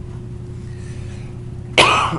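A man coughing sharply once near the end, the loudest sound here, after a stretch with only a steady low hum in the background.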